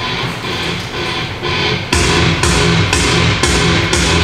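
Background music with a steady beat, growing fuller and louder about two seconds in.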